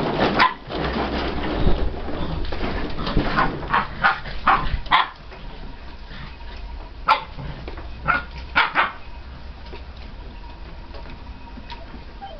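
Bearded Collie puppies yapping in play: a run of short yaps in the first five seconds and a few more about seven to nine seconds in.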